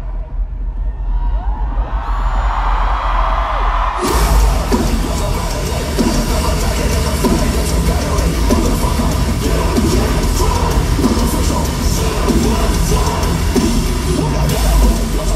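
Live metal band playing loud in an arena, recorded close on a phone: a sparser passage over deep bass, then about four seconds in the full band comes back in and keeps going.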